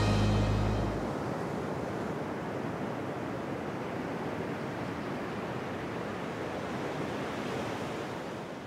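Theme music with low held notes ends about a second in, leaving a steady wash of ocean waves.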